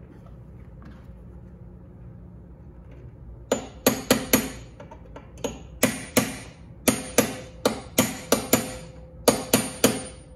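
Steel hammer tapping a brass punch held against a C3 Corvette hood latch fitting. From about three and a half seconds in come some seventeen sharp metallic strikes in quick irregular clusters, each with a short ring.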